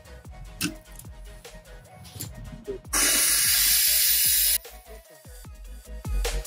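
A loud hiss of air and water spraying from an opened valve on a brass irrigation backflow preventer as the system is drained for winter, lasting about a second and a half in the middle and cutting off suddenly. Quiet electronic background music plays under it.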